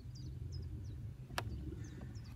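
Small birds chirping in short, high, falling notes over a low steady hum, with one sharp click about one and a half seconds in as the fishing rod is set down against the inflatable boat.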